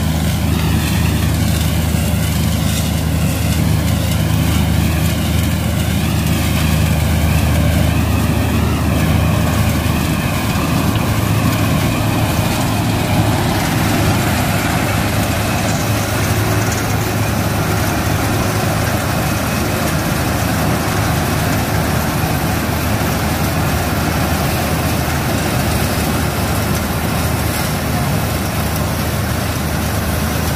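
Combine harvester at work harvesting rice, its diesel engine running with a steady low hum. For the first dozen seconds or so a wavering whine rides above it, and the rest is a steady rushing machine noise.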